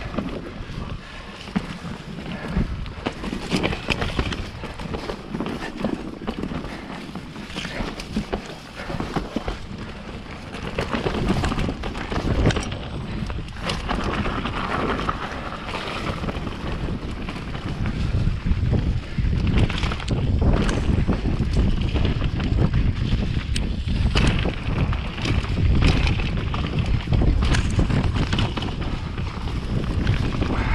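Mountain bike riding over a dirt forest trail: tyres rolling on the dirt with frequent knocks and rattles from the bike over bumps, and wind buffeting the microphone. The wind rumble grows louder from about two-thirds of the way in.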